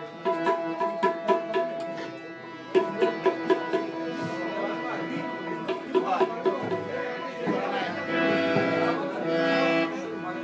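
Live baul folk music: a harmonium holds a steady chord while tabla drums play quick, regular strokes, with a short break about two seconds in before the drumming resumes. The harmonium chord swells near the end.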